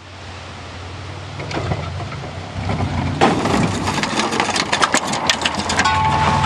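Camper van engine running, growing louder, then from about three seconds in a run of clattering knocks and scraping as the van's exhaust is torn loose underneath after the jump.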